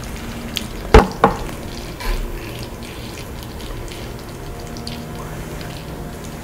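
Creamy curry sauce sizzling steadily in a skillet of udon on a tabletop burner. About a second in come two sharp clinks of dishware, a quarter-second apart.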